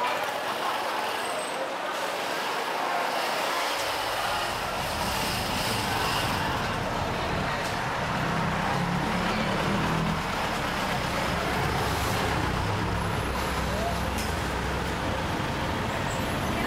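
Street traffic: engines of cars on the road close by, with a steady hiss of traffic and a low engine rumble that comes in about four seconds in and is strongest around the middle.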